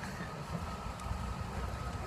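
Low, steady outdoor rumble on a phone microphone, wind or distant traffic, with a faint steady whine above it.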